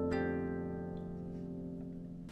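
Marini Made 28-string bass lap harp: one more note plucked just after the start, then the notes ringing on together and slowly fading away.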